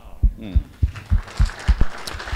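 A small audience clapping, over a run of dull low thumps about three a second.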